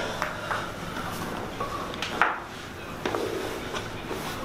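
Spinal joints cracking during chiropractic thoracic adjustments: a quick run of sharp pops at the start, a louder crack about two seconds in, and another about a second later.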